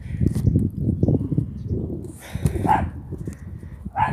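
Wind buffeting the phone's microphone, with rustling and handling noise from climbing through tree branches. A dog barks in the background.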